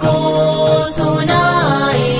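A naat, an Urdu devotional song, sung by young female voices over a layered backing. One note is held through the first half, then the melody glides down.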